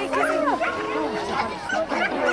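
A border collie barking repeatedly as it runs an agility course, with people's voices talking and calling over it.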